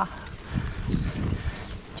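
Mountain bike rolling over hexagonal concrete paving blocks, picked up by a handlebar-mounted camera: a low, uneven rumble with light rattling.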